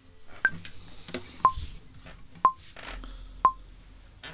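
Metronome count-in: four short electronic beeps, one a second, the first higher in pitch than the other three, counting in a backing track.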